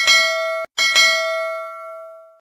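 Subscribe-button notification bell sound effect: two bright bell dings. The first is cut short by the second less than a second in, and the second rings on and fades away.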